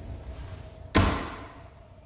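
A door shutting with a single loud thud about a second in, fading out over about half a second.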